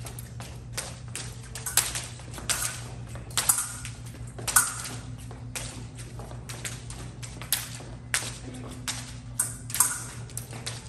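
Fencers' footwork on a fencing strip: irregular sharp taps and stamps of advancing and retreating feet, the loudest about four and a half seconds in, over a steady low hum.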